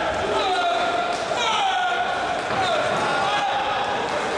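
Ringside shouting from spectators and corners, several long calls that fall in pitch, over a constant crowd din, with a few thuds of strikes landing in the ring.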